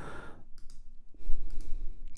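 A few soft computer mouse clicks as the synth plugin's on-screen controls are clicked, over a low room hum.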